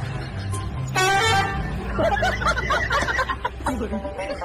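A short horn honk about a second in, the loudest sound. A voice follows for the last two seconds, over a steady low hum.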